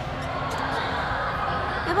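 Light taps and scratching from a marker pen signing at a desk, over a steady background hiss.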